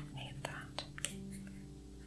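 Apple Pencil tip clicking and stroking on the iPad Pro's glass screen: a few light taps about half a second to a second in, over a faint steady low hum.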